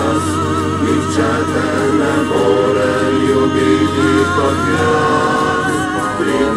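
Background music: several voices singing a slow Slovenian song in harmony, holding long notes with vibrato.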